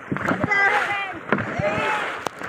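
Dragon boat crew paddling on choppy water, with paddles pulling and splashing through the water and a few sharp knocks. Raised voices call out over the strokes and are the loudest part.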